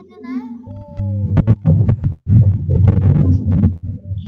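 A child reading aloud over a video call, her voice broken up and garbled by a bad connection into a loud, distorted, choppy 'bu-bu-bu' babble in which the words can't be made out.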